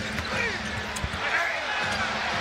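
Basketball bouncing on a hardwood court, a few thuds with the strongest about a second in, over the steady noise of an arena crowd.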